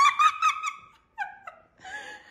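Small dog whining in high-pitched cries: one long cry, then a shorter falling one about a second later.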